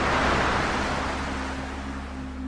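A rushing whoosh sound effect swells to a peak just after the start and fades away over about two seconds, over a low, steady music drone.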